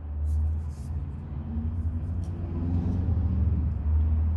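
Steady low background hum, with faint rustling and light knocks from the plastic camera being handled and turned over in the hands.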